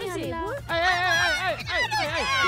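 Several women shouting and shrieking at once, their high voices overlapping in a noisy squabble, over a low steady music bed.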